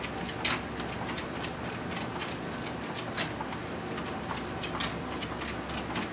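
Motorised treadmill running slowly with a steady hum, and a dog's claws ticking lightly on the moving belt as it walks, with a few sharper clicks, one about half a second in, one past the middle and one near the end.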